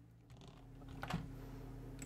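Faint, sparse computer keyboard key clicks, one louder about a second in, over a low steady hum.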